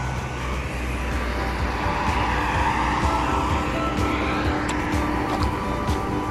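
Road traffic on a highway, with one vehicle passing as a swell of noise around the middle. Faint background music plays underneath.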